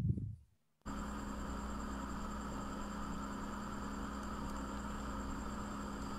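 A brief low sound right at the start, then, about a second in, a steady hum with faint hiss that comes on suddenly and holds evenly: the background noise of a screen-recorded presentation video as it starts playing, before its narration.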